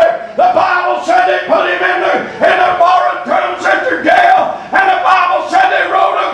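A man's voice preaching in a loud, chanted shout, in short held phrases about once a second with breaks between them, too sung-out for the words to come through.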